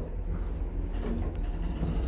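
Traction elevator car in motion, a steady low rumble as it comes in to stop at a floor.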